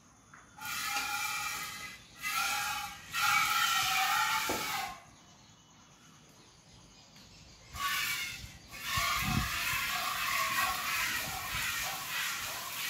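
Streams of milk squirting by hand from a water buffalo's teats into a metal bucket, a ringing hiss in runs. It stops for a few seconds in the middle and starts again about eight seconds in, with a low thump shortly after.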